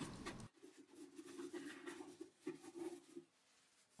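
Near silence: faint room tone with a low steady hum that fades out near the end, and a few faint scratchy ticks.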